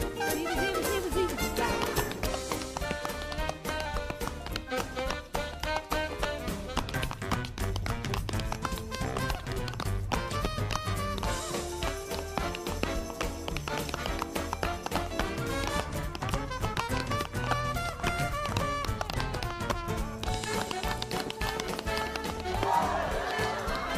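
Up-tempo New Orleans-style jazz played by a band, with the quick clicks of tap dancing over it.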